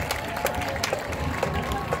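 Stadium crowd chatter and voices, with scattered hand claps as applause dies away.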